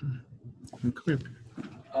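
Short, broken voice sounds from a participant on a webinar call line: soft utterances and a chuckle rather than full sentences.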